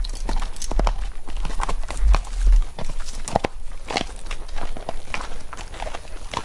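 Horses walking on a dirt trail, their hooves striking in an uneven, unhurried clip-clop. A low rumble sits under the hoofbeats for the first two and a half seconds.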